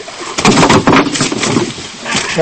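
A large catfish being hauled over the side of an aluminium jon boat, banging and thrashing against the metal hull in a quick run of knocks lasting about a second.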